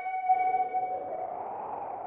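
Film score: a long held flute note that fades away into echo after about a second, leaving a soft musical haze.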